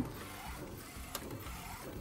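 An inkjet DTF printer, built on an Epson L1800, is printing onto transfer film. Its print carriage and feed make a faint, steady mechanical running sound, with a light click about a second in.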